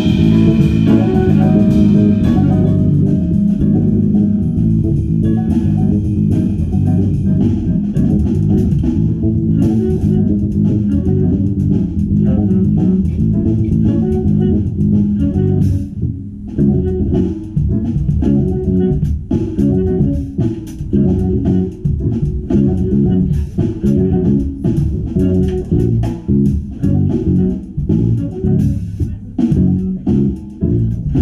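Live jazz combo playing, with an electric bass guitar to the fore in a run of quick low notes over a drum kit. The music briefly thins out about halfway through.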